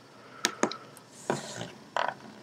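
A mobile phone being handled on a wooden table: two quick light clicks about half a second in, a short scuffing sound a little later, and another click near the end.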